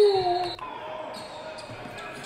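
A man's long, drawn-out "Oh!" of amazement, sliding down in pitch and ending about half a second in, then a much quieter stretch of faint background sound.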